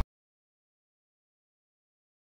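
Dead silence: the music stops abruptly right at the start, and no sound follows.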